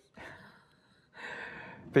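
A man's breath at a lectern microphone: a short faint puff just after the start, then a longer audible in-breath near the end, taken before he goes on speaking.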